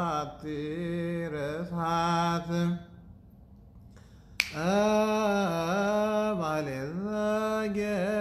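A man chanting solo in Ethiopian Orthodox liturgical style, with long held notes that waver and slide in pitch. About three seconds in he breaks off for a breath of a second and a half. A single sharp click follows, and the chant resumes.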